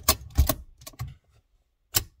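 Handbrake lever ratchet on a Nissan Patrol GU clicking as the lever is worked: a few sharp clicks in the first half-second, one more about a second in and another at the end. The notches are being counted to check the adjustment of a newly fitted handbrake cable.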